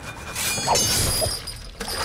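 Action-film fight soundtrack: a loud crashing, shattering sound effect builds about half a second in over background score, with a sharp hit just before the end.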